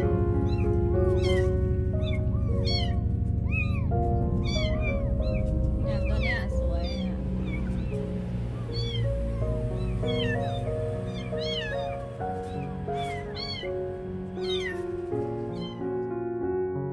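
Newborn kittens mewing again and again in short, high, thin cries over background music.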